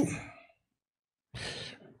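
A short breath or sigh into the microphone, a soft rush lasting about half a second, roughly a second and a half in.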